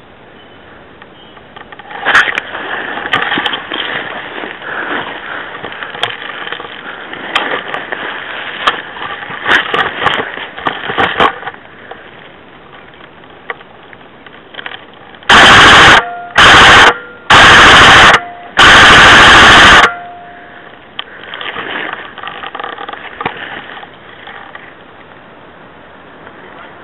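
An airsoft electric gun fired close to the microphone in four short full-auto bursts, so loud they distort, with a faint motor whine at the start and end of each burst. Before them come several seconds of rustling and clicks through brush.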